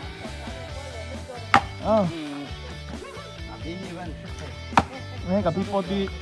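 Two sharp blows of a sledgehammer striking a wooden log, about three seconds apart, each followed by a man's loud shouted grunt. Background music plays throughout.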